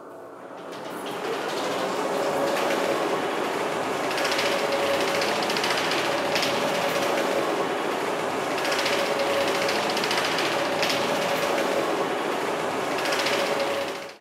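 Towing-tank carriage running along its rails and towing a ship model through the water. A steady rush of machinery and water builds up over the first two seconds and then holds, with a steady hum and a light click every second or two.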